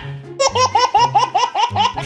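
A man laughing in a quick run of high-pitched bursts, about five or six a second, starting just under half a second in, with low music underneath.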